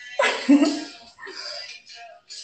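A woman laughing briefly: a short voiced burst of laughter, then a softer, breathy trailing laugh.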